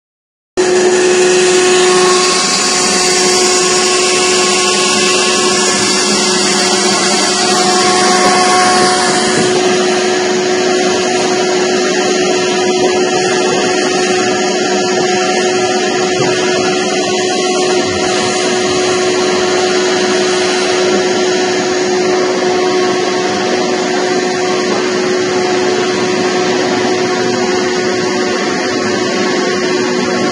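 Vacuum transfer machine running steadily while it empties pickled carrots and brine onto a stainless-steel chute: a loud, even machine noise with a constant hum.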